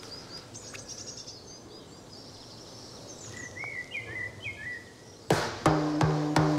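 Small birds chirping, in runs of short high notes at first and then lower, quicker chirps, over faint outdoor background noise. Near the end a music track with drums and bass comes in.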